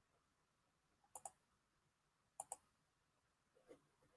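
Near silence broken by three faint double clicks, about a second and a quarter apart.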